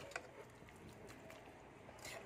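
Near silence: faint room tone, with a few light clicks near the start.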